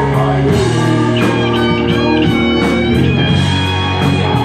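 Live rock band playing an instrumental passage: electric guitars, bass and drums, with held high notes in the middle of the passage.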